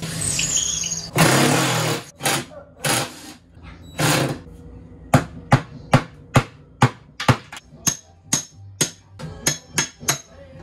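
Cordless drill run in short bursts, driving screws out of an upper kitchen cabinet. In the second half come sharp knocks against the cabinet, about two a second.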